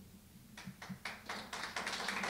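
Small audience applause starting up after a poem recitation: near silence for about half a second, then scattered claps that build into fuller clapping by the end.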